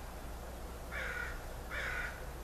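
Two short, harsh bird calls about three quarters of a second apart, over a steady low hum.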